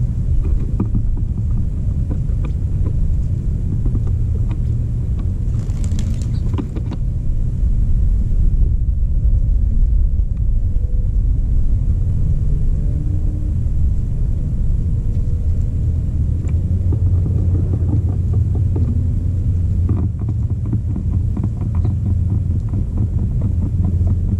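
Steady low wind rumble on a ground-level action camera's microphone, with scattered small ticks of mourning doves pecking seed close by. A brief louder rustle comes about six seconds in.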